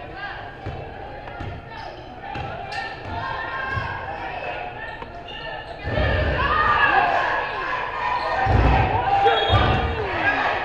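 A basketball bouncing on a hardwood gym floor in a run of dull, echoing thuds, over the voices of players and spectators. The voices and thuds grow louder about halfway through, as play picks up.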